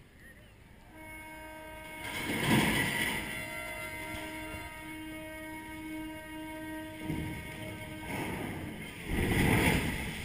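A ship's horn sounds one long, steady blast as the vessel is launched sideways down the ways. Near the end a rising rush of noise begins as the hull hits the water.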